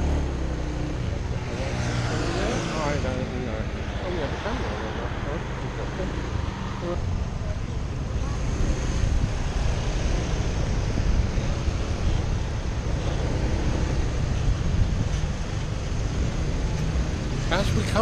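Riding a small motor scooter through traffic: its engine runs steadily under road and traffic noise from the cars and motorbikes around it.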